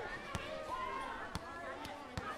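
Voices talking in a gym, with a few sharp metallic knocks of weights, one about a third of a second in, another about a second later and one just before the end.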